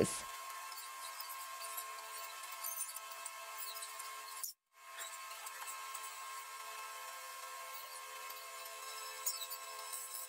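Faint steady hum with light, scattered clicks and rubbing of plastic cups and a drinking straw as epoxy resin is poured and stirred. The sound cuts out completely for a moment a little before the middle.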